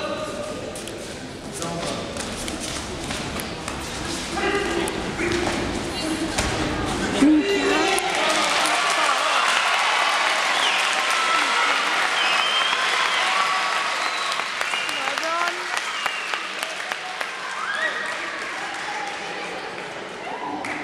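Spectators in a large hall shouting and calling out, then a sharp thud about seven seconds in, after which the crowd cheers and shouts loudly for several seconds as a fighter is taken down to the mat.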